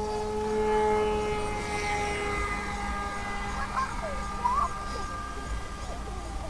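Electric motor and propeller of an FPV model airplane running at full throttle on launch and climb-out: a steady whine that slowly fades as the plane flies off. A few short chirps come near the middle.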